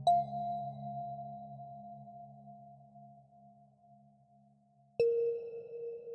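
Slow ambient relaxation music: a bell-like tone is struck at the start and rings, fading over about five seconds, then a second, lower tone is struck near the end. A low drone underneath fades away in the first half.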